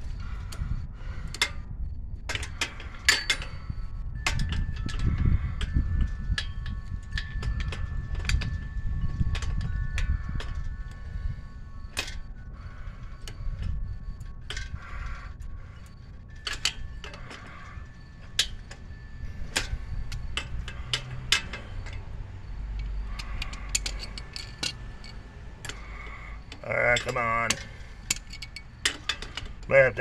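Scattered sharp metal clicks and clinks of pliers working on a tricycle's rear wheel hub, trying to loosen a stuck nut that keeps turning. A low rumble runs under the clicks in the first half, and a brief grunt or mutter comes near the end.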